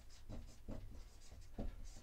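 Dry-erase marker writing on a whiteboard: a series of short, separate strokes of the marker tip on the board, over a low steady hum.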